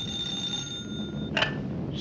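Desk telephone bell ringing, a steady metallic ring that stops about 1.3 seconds in, followed by a short burst of sound as the call is answered.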